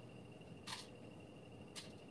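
Quiet room tone with a faint steady high-pitched whine and two light clicks about a second apart.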